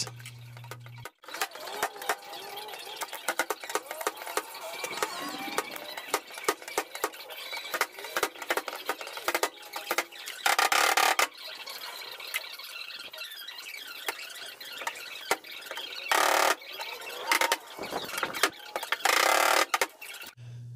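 G90E stud-welding dent puller working a creased truck bedside: short buzzing weld pulses, one about a second long around ten seconds in and several shorter ones near the end, among many sharp metal clicks and taps from the slide hammer pulling small dents and high spots being tapped down.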